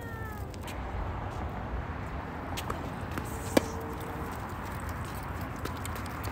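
A short, falling, pitched cry right at the start, then a single sharp crack of a tennis ball struck by a racket a little past halfway.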